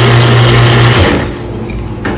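Commercial espresso machine's pump running steadily as water flushes through the group head, then shutting off with a click about a second in as the group is switched off.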